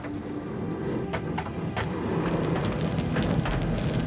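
Charcoal fire in a swordsmith's forge, burning with a steady rumble that grows slowly louder, with a few sharp crackles and clicks from the coals.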